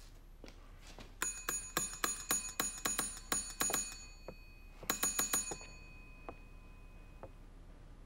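A small counter service bell struck rapidly and repeatedly, about four or five dings a second for nearly three seconds, then a second short flurry of dings a second later. The bell is being rung to call the shopkeeper.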